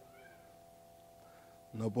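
A pause in a man's speech, with a faint steady hum and a faint, short, high-pitched call that rises and falls near the start. The man's voice resumes loudly near the end.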